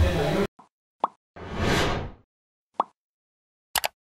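Speech cut off abruptly about half a second in, then sound effects for an animated subscribe button: a short pop, a falling whoosh, another pop, and a quick double mouse click near the end.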